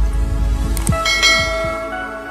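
Logo intro sting: a low rumble with short swooshes, then a bell-like chime rings out about a second in and slowly fades.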